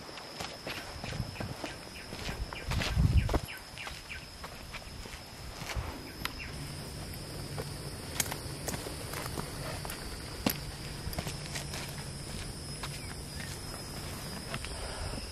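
Footsteps of a hiker climbing a dirt and rock mountain trail: irregular scuffs and clicks of shoes on sand and stone. A louder low rumble comes about three seconds in, and a steady high-pitched tone runs underneath.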